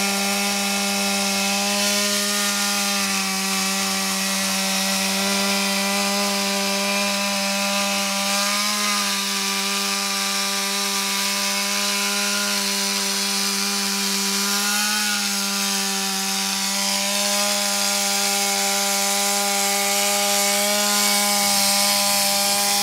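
Two-stroke chainsaw running at full throttle while its bar cuts through lake ice, the engine note steady and dipping slightly a few times as the cut loads it.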